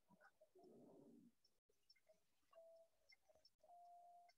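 Near silence, with a faint low call about half a second in and a few faint short tones later on.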